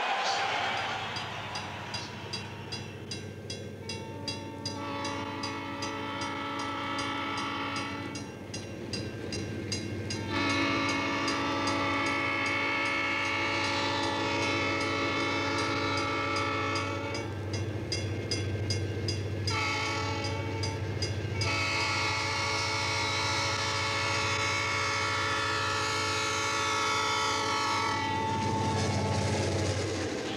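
Diesel locomotive's air horn sounding several long blasts, with short gaps between, over the engine's steady low rumble and a regular clicking of the wheels on the rails.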